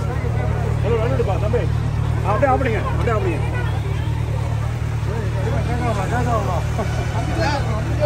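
A sport motorcycle's engine idling with a steady low hum, under the chatter of a crowd of many voices talking over each other.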